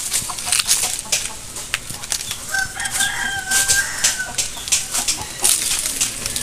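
A rooster crowing once, about two and a half seconds in: one long held call of nearly two seconds. Repeated sharp crackling and rustling runs under it.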